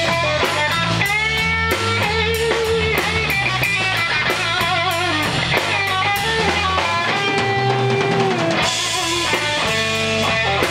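Live rock band playing: an electric guitar plays lead lines with string bends and vibrato over bass guitar and a drum kit keeping a steady beat on the cymbals.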